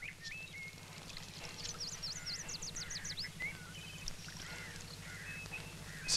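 Birds calling in outdoor ambience: short whistled notes, with a quick run of high descending chirps near the middle, over a low steady hum.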